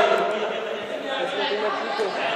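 Group chatter: several people talking and calling out at once in a large indoor sports hall, no single voice standing out.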